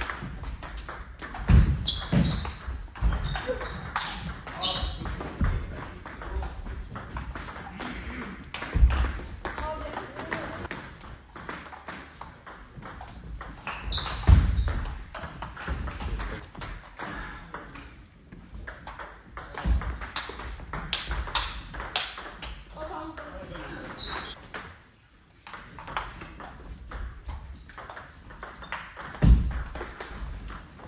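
Table tennis ball clicking off bats and table during rallies, with voices between points and a few dull thumps.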